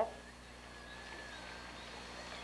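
Quiet outdoor background: a faint even hush with a thin, steady high tone running through it. The moored river boat's motor is shut off.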